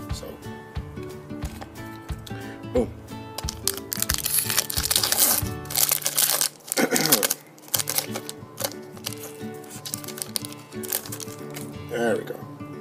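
Foil wrapper of a trading-card booster pack being torn open and crinkled by hand, the crackle loudest around four to six seconds in, over steady background music.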